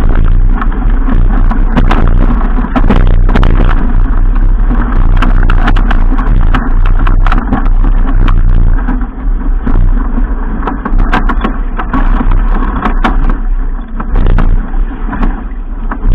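Strong wind buffeting an action camera's microphone on a racing keelboat sailing hard, mixed with the rush of choppy water and spray along the hull. Loud and continuous, with a deep rumble and frequent sharp crackles.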